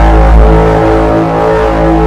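A loud, steady drone at one unchanging pitch, a sound effect edited in under a title card, which cuts off abruptly.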